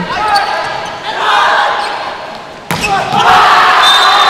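Volleyball ball struck with a single sharp smack about two-thirds of the way in, as a spike ends the rally, followed by the arena crowd cheering louder. A short high whistle tone sounds near the end.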